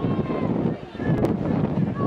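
Spectators' voices shouting and cheering during a swim race, over a steady rumble of wind on the microphone.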